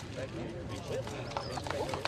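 People talking in the background, with several sharp clicks in the second half.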